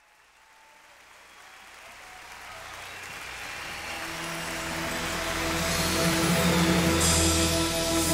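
The start of a live praise-and-worship recording fading in from silence: audience applause and cheering under the band's sustained chords, swelling steadily louder before the choir comes in.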